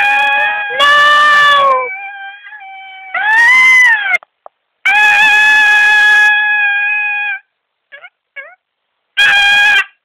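A series of loud, high-pitched vocal cries, each held on a steady pitch: two at the start, a shorter rising-and-falling one at about three seconds, a long one of about two and a half seconds in the middle, and a short one near the end.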